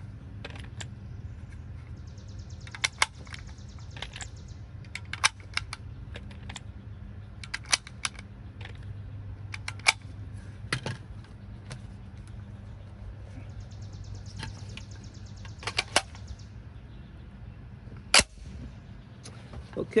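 5.56×45 mm cartridges being pressed one at a time into a rifle magazine: sharp metallic clicks, often in quick pairs, spread a few seconds apart. A single louder click comes near the end.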